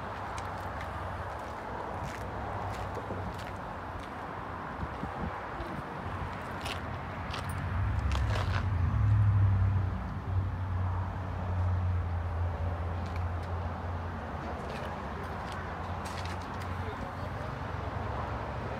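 Low, steady engine rumble that swells louder for a few seconds about eight seconds in, then settles back, with scattered light clicks over it.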